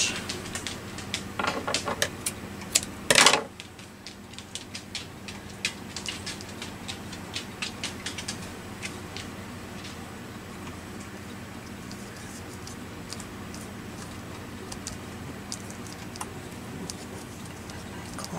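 Hands pulling apart and handling a tangle of frayed fibre trim and small craft pieces on a cutting mat: soft rustling with many light clicks, a louder rustle a little over three seconds in, then quieter scattered clicks over a low steady hum.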